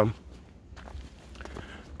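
Faint footsteps on a gravel dirt trail, a few soft steps.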